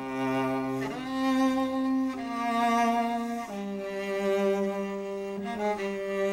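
Cello playing slow, held bowed notes, moving to a new note every second or two.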